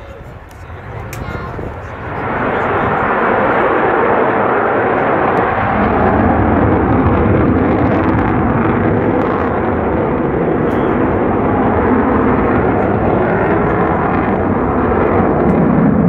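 Avro Vulcan XH558's four Rolls-Royce Olympus jet engines heard from the ground as the bomber flies past: a loud, steady jet noise that swells up about two seconds in and holds.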